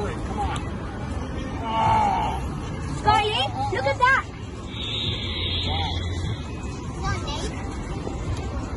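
Background voices and chatter of people nearby, coming and going in short snatches, over a low steady rumble.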